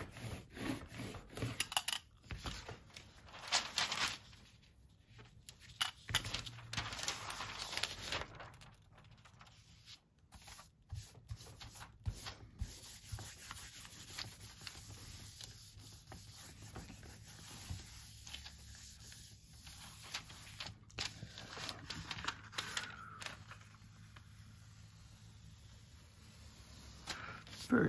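A hand rubbing rice paper down onto a painted gel printing plate, a dry papery rustle in irregular strokes that transfers the paint to the paper. Near the end the paper is peeled back off the plate.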